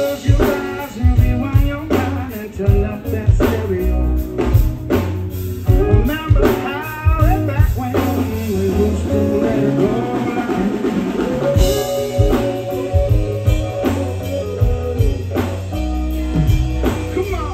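Live reggae band playing: drum kit, bass guitar and guitar, with a melodic lead line bending in pitch over a heavy, steady bass.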